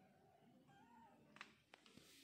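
Faint kitten meows, thin wavering calls, followed by a few small sharp clicks in the second half.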